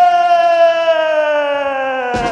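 A man's voice holding one long, loud, drawn-out note that slides slowly down in pitch, a theatrical cry stretched over the word 'Entikhabat' ('elections').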